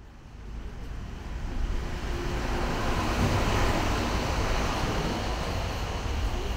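Outdoor city street noise: a steady, rumbling wash of wind on the microphone mixed with traffic. It fades in over the first two seconds.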